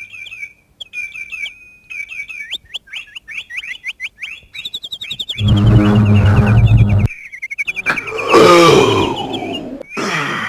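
Birds chirping in rapid, repeated short calls. About five and a half seconds in comes a loud low rumble lasting under two seconds. About eight seconds in there is a loud roar from a giant, falling in pitch.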